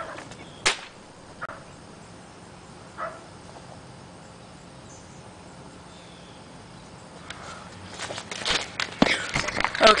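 A single sharp crack of an air rifle shot about a second in, fired to finish off a wounded bird, followed by a couple of faint knocks. Near the end comes rustling and thumping handling noise as the camera is picked up.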